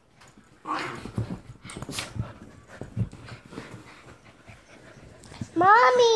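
Small dogs moving about on a fabric couch: soft breathy snuffles, rustling and a few sharp clicks. A loud voice with a rising-and-falling pitch cuts in near the end.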